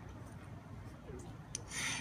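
A pause in a speech at a microphone: faint low background rumble, a small click about one and a half seconds in, and a soft intake of breath just before the speaker resumes.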